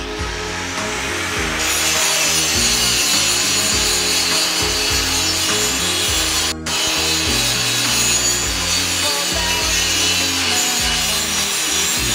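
Handheld angle grinder grinding welded steel tubing, a loud, steady, harsh grinding hiss that brightens as the disc bites into the metal about a second and a half in. A short break comes about six and a half seconds in.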